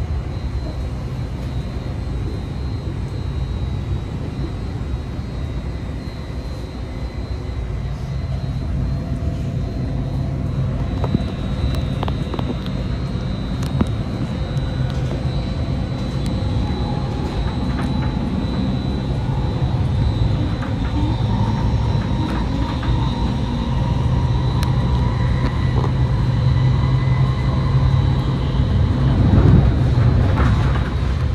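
Caltrain passenger train running on the track, heard inside the passenger car: a steady low rumble that slowly grows louder as the train picks up speed. A faint whine climbs gently in pitch through the middle, and there are a few small ticks and rattles.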